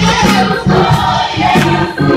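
Gospel choir singing with band accompaniment: a strong, steady bass line and a regular beat under the voices.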